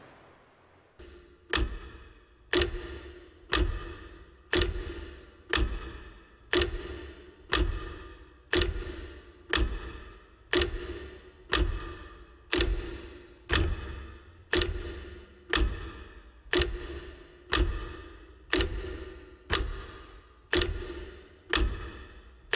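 A metronome ticking steadily about once a second, each tick a sharp click with a short ringing tone, starting about a second and a half in. This is the metronome sound that marks Ukraine's national minute of silence.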